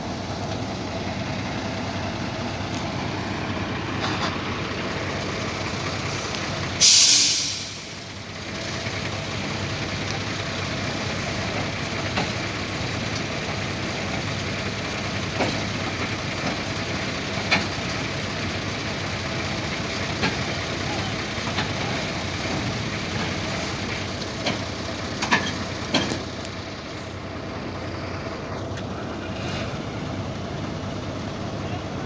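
Heavy diesel truck engine running steadily, with a short, loud hiss of air from the air brakes about seven seconds in. A few faint clicks sound now and then.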